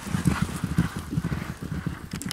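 Hoofbeats of several racehorses galloping on grass turf, a rapid uneven drumming of thuds that fades as the horses move away.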